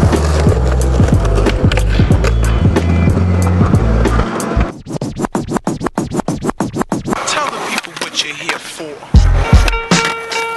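A hip hop beat with heavy bass, with skateboard sounds mixed in. About halfway through the beat drops out, leaving a run of rapid, evenly spaced clicks. Near the end comes a loud skateboard impact on a concrete ledge.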